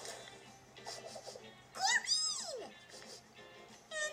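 A cartoon character's high-pitched squeal, swooping up and then down in pitch for about a second, about two seconds in, over soft background music.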